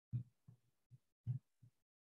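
A run of low, dull thumps, about two a second, the louder ones roughly a second apart.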